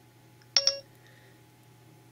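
iPhone 4S Siri start-listening chime: a quick two-note electronic beep from the phone's speaker about half a second in, as the Siri microphone button is tapped.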